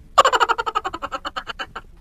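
A short sound effect: a quick run of pitched pulses, about eleven a second, that fade away over about a second and a half.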